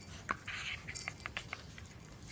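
A dog's collar tags jingling in a few short, light metallic clicks as the dog moves.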